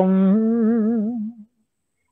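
A woman's unaccompanied sung voice holding a long note with a slow, wavering vibrato, fading away and stopping about a second and a half in.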